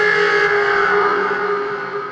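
A sustained, echoing pitched tone made from processed balloon samples, holding one steady pitch and slowly fading.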